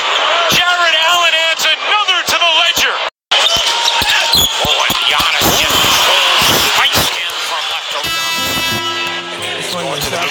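Basketball game broadcast sound: arena crowd noise with a ball bouncing on the court and high wavering squeaks in the first few seconds, broken by a brief cut to silence about three seconds in. A music track with steady held tones comes in near the end.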